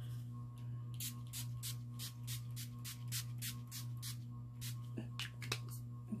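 NYX matte finish setting spray pumped onto the face in a rapid run of about twenty quick spritzes, roughly five a second, starting about a second in and stopping near the end. Underneath is a steady low electrical hum.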